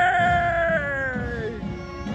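A person's long, high whoop, held and sliding slowly down in pitch until it fades out about a second and a half in.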